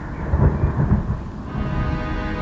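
Thunder rumbling over steady rain, a storm sound effect at the start of a hip-hop beat, with two louder rolls in the first second. A held synth chord begins to come in about one and a half seconds in.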